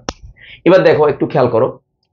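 One sharp click at the very start, then a man speaking for about a second.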